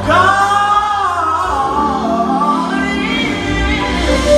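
Gospel choir and band performing live, with a solo voice singing a long run that bends down and up in pitch over the choir and a steady bass.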